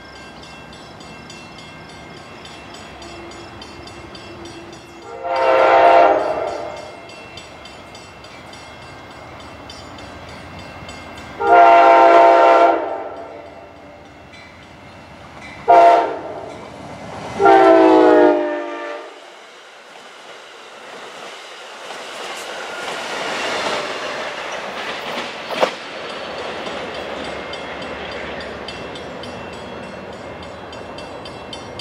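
Amtrak diesel locomotive's horn sounding the grade-crossing signal, a chord of several notes blown long, long, short, long. The train then passes with a rising rush and rumble of wheels on rail, with one sharp clack near the end.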